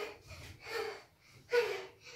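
A girl's short, breathy voiced gasps, about one a second.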